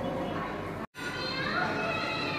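Indistinct background voices chattering, with no clear words, cut off by a sudden brief dropout to silence just before a second in, then resuming with higher-pitched voices.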